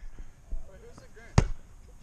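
A thrown football's impact: one sharp thud about one and a half seconds in, with faint voices in the background.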